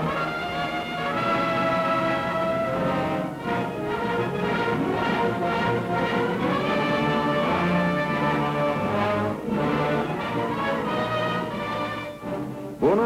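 Orchestral film-score music with prominent brass playing sustained notes.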